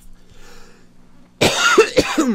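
A man coughing into his elbow: one loud, harsh cough that starts suddenly about one and a half seconds in.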